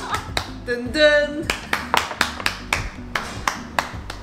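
A person clapping their hands in a quick, steady run of claps, about four to five a second. A voice sings a short 'dun dun' about a second in.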